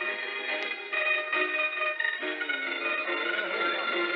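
Organ music playing a tune of held notes.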